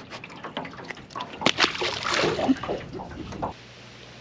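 A small largemouth bass being handled over lake water: knocks and clicks, then a splash of water about a second and a half in, as of the fish going back into the lake. Near the end the sound drops suddenly to a quiet steady background.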